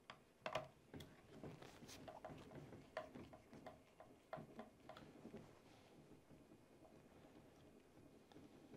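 Faint, irregular clicks and ticks of a hand hex driver turning a screw out of the plastic rear bumper mount of an RC truck, thinning out after about five seconds.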